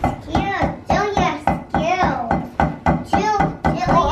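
Drumsticks tapping a rubber drum practice pad in a steady, quick beat, with a child's voice vocalizing in rhythm alongside.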